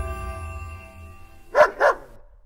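A held music chord fading away, then a dog barking twice in quick succession near the end.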